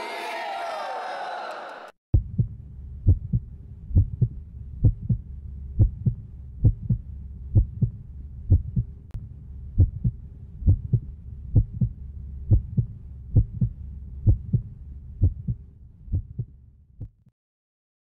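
A group shouting together for about two seconds, then a heartbeat sound effect: a low double thump about once a second over a faint steady tone, stopping shortly before the end.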